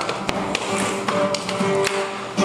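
Acoustic string band playing an instrumental passage, with acoustic guitar and banjo, punctuated by sharp percussive taps keeping time, a few to the second.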